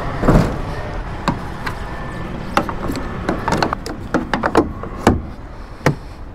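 Irregular sharp knocks and clacks over a low steady rumble: handling noise on a Kenworth semi truck's hood and cab as the driver opens the door. There is a dense cluster of knocks in the middle and a loud clack just before the end.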